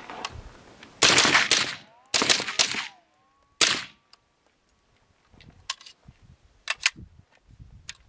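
A suppressed FN15 carbine in .300 Blackout fired quickly: a cluster of shots about a second in, another cluster about two seconds in, and a single shot near four seconds. A few light clicks and knocks follow near the end.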